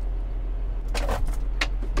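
John Deere 6930 tractor's six-cylinder diesel engine droning steadily inside the cab while pulling a cultivator through the field. About a second in there is a short plastic rustle and a few clicks, as a water bottle is set back into its holder.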